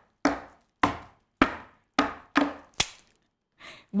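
A series of sharp percussive knocks, each with a short ringing fade, about two a second, stopping about three seconds in.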